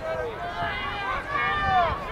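Several people shouting and calling out at once in high-pitched voices, with no clear words, growing louder toward the end.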